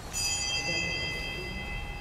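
A small bell struck once, its high ring fading over about two seconds: the bell that signals the start of Mass.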